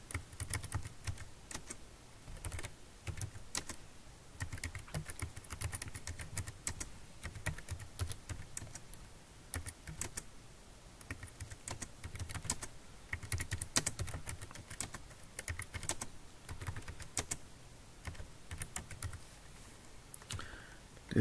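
Typing on a computer keyboard: short, irregular runs of sharp key clicks, each with a soft low thump, broken by brief pauses.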